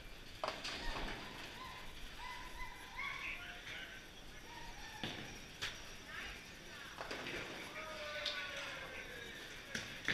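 Bowling alley ambience: scattered knocks and clatter of balls and pins from the lanes, with faint voices in the background.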